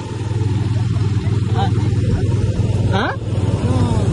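Motorcycle engine running at a steady cruising speed, heard from the rider's seat with a constant rush of wind.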